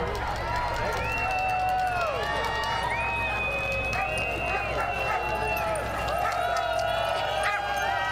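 Many sled dogs howling and yelping at once, their long, wavering calls overlapping without a break.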